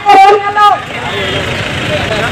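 A woman's voice amplified through a microphone and loudspeaker, speaking loudly for under a second, then steady background street noise with faint voices.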